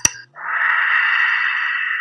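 Kahoot quiz game sound effect as the countdown runs out: the ticking countdown music stops, and about a third of a second later a long whooshing swell with no clear pitch sounds. It holds steady and fades away after about two seconds, marking that time is up.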